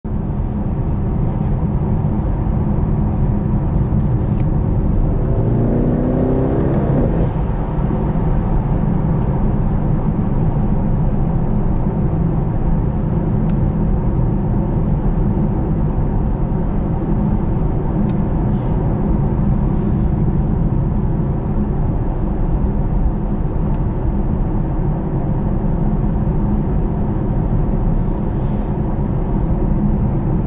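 Mercedes-AMG E63 S 4Matic+ cruising on a motorway, heard inside the cabin: a steady low drone of its twin-turbo V8 and tyre and road noise. A brief rising engine note comes about six seconds in.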